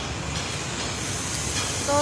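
A steady hiss of background noise, even and unchanging.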